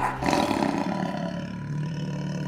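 A loud, rough, roar-like burst of noise rises over a sustained, ringing chord at the close of the outro music, then slowly eases off.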